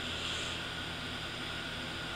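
Steady room tone: an even hiss with a faint low hum underneath and no speech.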